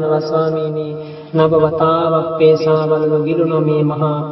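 A single voice chanting in a steady monotone, Buddhist-style recitation held long on one pitch. It breaks off briefly about a second in, then goes on.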